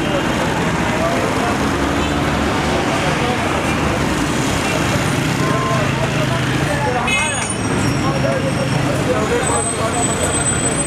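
Busy street ambience: steady traffic noise with the indistinct voices of people talking.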